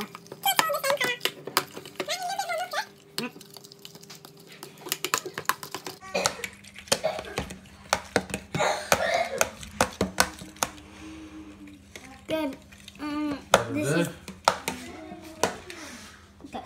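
Metal fork beating eggs and milk in a plastic food container: irregular clicking and scraping of the tines against the plastic sides and bottom.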